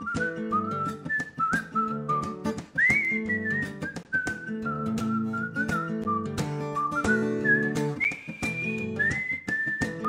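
Whistled melody sliding between notes over a steadily strummed acoustic guitar, with the highest whistled notes about three seconds in and again about eight seconds in.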